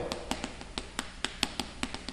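Chalk writing on a chalkboard: a quick, irregular run of sharp taps and clicks as the chalk strikes and drags across the board forming characters.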